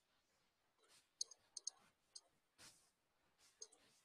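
Faint computer mouse clicks, several short sharp clicks, some in quick pairs, about a second in and again near the end, over near-silent room tone.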